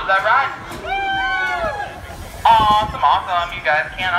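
Loud, high-pitched voices: drawn-out calls and speech, the loudest starting suddenly about two and a half seconds in.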